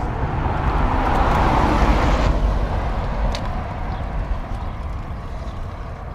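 A car passing on the road: its tyre and engine noise swells to a peak about a second and a half to two seconds in, then fades away. Underneath is the steady low rumble of the stroller rolling along the concrete shoulder.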